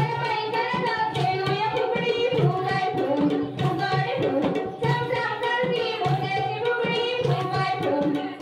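Women's voices singing a Marathi fugdi folk song over the steady beat of a dholki hand drum.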